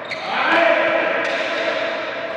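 Badminton rackets striking the shuttlecock in a fast doubles rally: a few sharp cracks under a second apart, ringing in a large hall.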